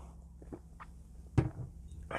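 Quiet sipping from a glass beer mug with a few faint clicks, then one sharp knock about one and a half seconds in as the glass is set down on a hard surface.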